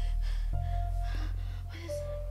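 A woman gasping again and again in pain, with short ragged breaths, over a low, steady film-score drone.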